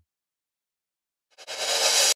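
Crash cymbal freeze-tail riser played back through a tempo-synced auto pan, so it is gated on and off: silence, then the hissy cymbal wash cuts back in about a second and a half in and swells louder.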